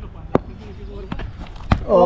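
Two sharp knocks of a cricket ball, one about a third of a second in and a louder one near the end as the batter swings, with a couple of lighter clicks between.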